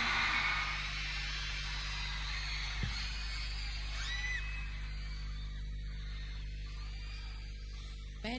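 The end of a loud rock-pop song dying away in the concert hall, leaving a steady low electrical hum from the sound system. A few faint high calls rise and fall about four seconds in.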